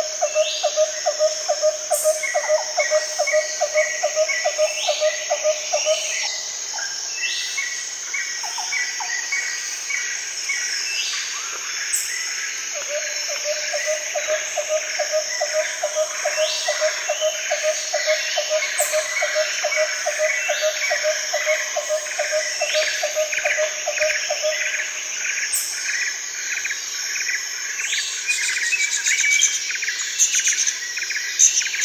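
Birds chirping and calling over a steady high drone of insects. A low pulsing call repeats a few times a second in two long runs, one at the start and one through the middle.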